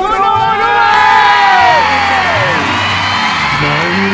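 A voice holds a long sung note that slides downward, over backing music and a studio audience cheering and whooping.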